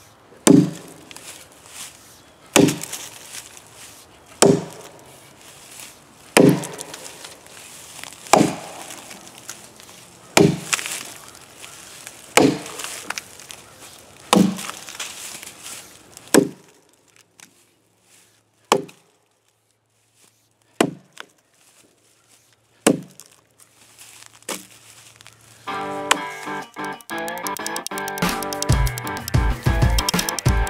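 Axe chopping into a pine log, one sharp strike about every two seconds, the strikes spaced further apart after about seventeen seconds. Music with a beat comes in near the end and grows loud.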